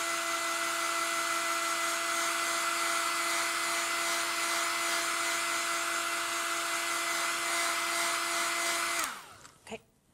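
Handheld hair dryer blowing on a wet watercolour layer to dry it: a steady rush of air with a steady hum. It switches off about nine seconds in, its pitch falling as it winds down.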